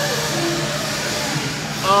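Background chatter of people's voices over a steady low hum.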